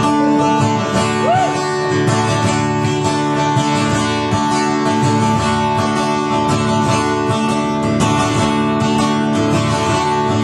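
Solo acoustic guitar strummed steadily, chords ringing without a break and with no singing over it.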